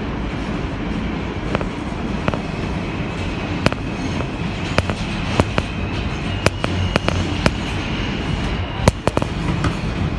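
R160B subway car running through a tunnel, heard from inside the lead car: a steady rumble with sharp, irregular clicks of the wheels over rail joints, and a faint steady high tone through the middle.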